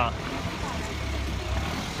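A ferry boat's engine running steadily, a low, even hum.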